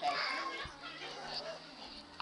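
Indistinct voices in a room that fade after the first half second, with a single soft knock about halfway through the first second.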